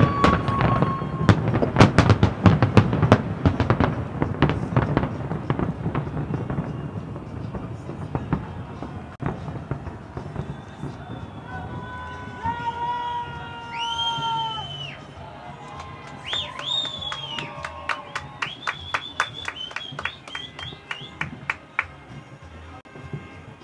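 Fireworks going off: a dense run of sharp bangs and crackles, loudest at the start and thinning out over the first several seconds. Later, several steady pitched tones sound for a second or two each, and near the end a quick series of evenly spaced cracks.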